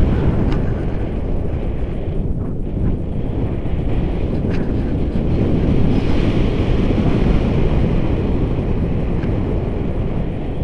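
Wind rushing over the camera microphone of a paraglider in flight: a loud, steady, low rumbling buffet with no let-up.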